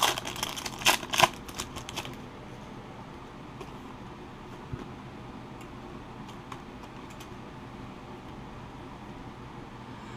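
Trading-card pack wrapper crackling as it is torn open by hand for about the first two seconds. This is followed by faint ticks of the cards being handled.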